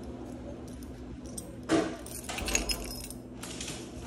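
A bunch of keys jangling: a sharp clink a little under two seconds in, then a run of lighter metallic clinks for over a second.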